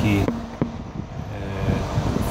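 A four-fan aquarium cooling fan bar running with a steady hum as it blows across the water surface, with one brief click a little over half a second in.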